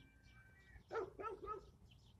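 A dog barking faintly, three short barks in quick succession about a second in.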